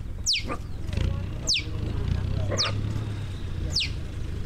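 Short, high, sharply falling whistled calls repeated about once a second, with some fainter wavering calls lower in pitch between them. A low steady engine hum runs underneath.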